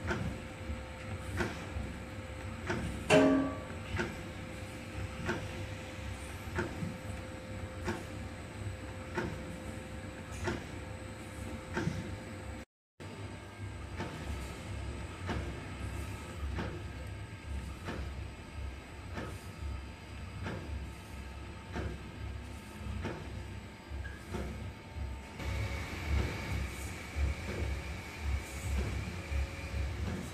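Food ball-forming (encrusting) machine running: a low motor hum with a regular click about once a second as it cuts off each ball, and one louder clank about three seconds in. Near the end a rotating sesame coating drum runs in its place, with a steady high tone.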